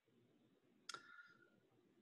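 Near silence, broken by one faint, short click about a second in, with a brief faint ringing after it.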